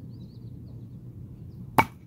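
A thrown steel mini cleaver knife striking a wooden log once, a single sharp knock near the end, without sticking.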